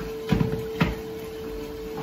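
Two dull knocks about half a second apart: a plastic blender jar set down onto its motor base on a kitchen counter.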